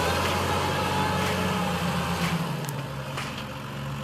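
A New Holland TM150 tractor's diesel engine running steadily while it pulls a Lemken Korund seedbed cultivator. The engine gets quieter after about two seconds.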